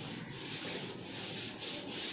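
A whiteboard eraser rubbing across a whiteboard, wiping off marker writing in repeated back-and-forth strokes.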